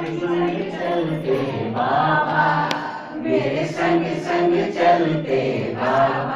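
Several voices singing a devotional song together in unison, with long held notes that rise and fall.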